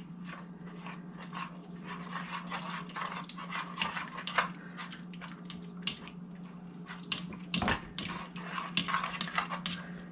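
A spoon stirring chunks of raw muskrat meat through a wet marinade in a bowl: a run of irregular short clicks and wet scrapes over a steady low hum, with one louder knock about three-quarters of the way through.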